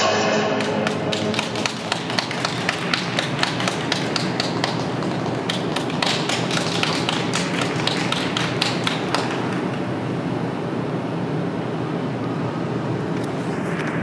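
Audience clapping after a figure-skating program, many separate hand claps heard distinctly, thinning out after about nine seconds.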